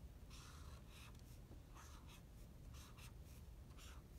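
Faint pen strokes on smooth Bristol paper: a series of short strokes with brief pauses between them.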